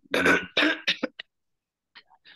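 A person coughing and clearing their throat: a quick run of rough bursts in the first second, getting shorter and weaker until they stop.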